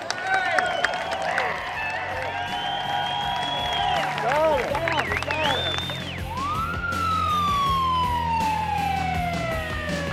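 Sirens wailing, rising and falling in pitch over a low steady hum; a little past halfway one sweeps up and winds slowly down.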